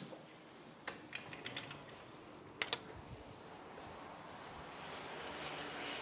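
Footsteps climbing indoor stairs: a few faint taps and clicks, with two sharp clicks close together about two and a half seconds in, then a soft hiss that slowly grows near the end.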